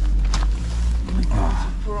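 Low, steady rumble of a car, which comes in suddenly right at the start, under brief snatches of voices.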